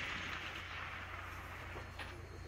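The fading echo of a rifle shot rolling away across open ground, dying out over the first second or so, over a steady low hum.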